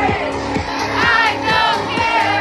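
Loud dance music with a steady beat of about two beats a second, and a party crowd singing and shouting along. The voices swell about a second in.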